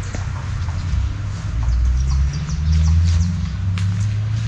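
Small birds chirping here and there over a loud, steady low rumble.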